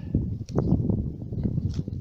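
Footsteps and rustling through dry grass, an irregular crunching shuffle with a few sharp ticks.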